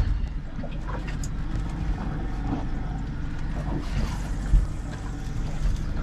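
Steady low rumble of a small boat out on the water, with a sharp knock at the very start and another about four and a half seconds in.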